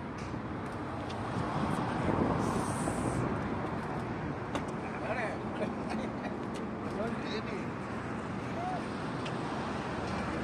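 Indistinct voices over a steady hum of outdoor traffic noise.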